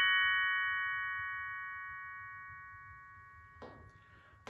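Professional glockenspiel's metal bars ringing on after being struck with hard mallets: a chord of several high notes fading slowly and evenly away, with no new strikes.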